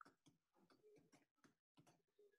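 Faint typing on a computer keyboard: a quick, irregular run of key clicks.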